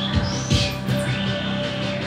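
Live electronic music: sustained low synthesizer tones under a few sharp percussive hits, with a high chirping synth sweep that rises and falls about half a second in.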